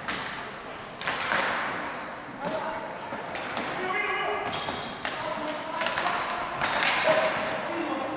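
Ball hockey play on a hard gym floor: repeated sharp clacks of sticks hitting the ball and floor, with brief high squeaks and players' shouts, echoing in the hall.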